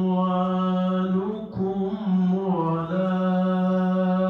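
A male Qur'an reciter chanting in melodic tajweed style, drawing out long held notes. There is a short break about one and a half seconds in before the next phrase.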